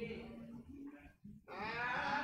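A voice singing long held notes, pausing briefly, then coming back louder about a second and a half in.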